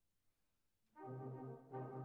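Near silence, then about a second in a brass band comes in with full sustained chords over a low bass line. This is the band's first entry at the start of the piece.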